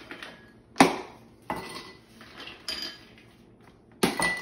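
Ice cubes put by hand into small glass tumblers, a few separate clinks of ice on glass, the loudest about a second in.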